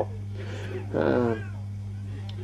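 A steady low electrical hum, with one short falling vocal sound about a second in.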